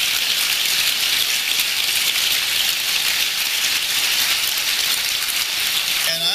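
Audience applauding, loud and steady.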